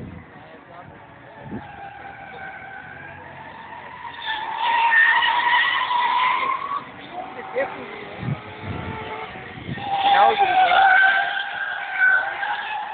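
Toyota Soarer drift car sliding through the corners, its engine revving high and its tyres squealing. The sound is loudest from about four to seven seconds in and again near the end.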